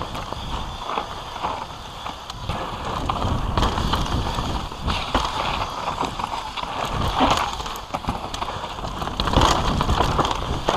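Mountain bike descending a dirt trail at speed: tyres rolling and scrubbing over dirt and rocks, with frequent small knocks and rattles from the bike, and wind rumbling on the microphone.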